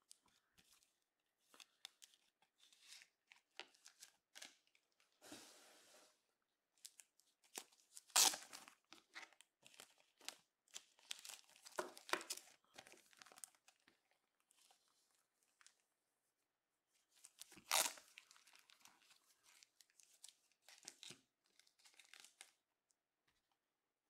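Plastic card sleeves and packaging crinkling and rustling as trading cards are handled, in scattered short bursts, loudest about a third of the way in and again about three quarters of the way in.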